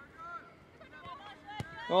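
Faint, distant voices calling out across an outdoor football pitch, with a single faint tap about a second and a half in; a commentator's voice comes in loud near the end.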